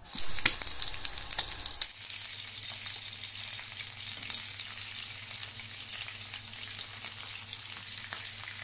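Hot oil sizzling in a stainless steel frying pan: an egg frying with sharp crackling pops for about the first two seconds, then smoked fish (tinapa) frying with a steadier sizzle.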